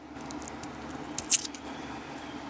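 Paper wrapper of a 50-cent roll of pennies crinkling and tearing as it is opened by hand. The loudest crackle of paper comes a little over a second in.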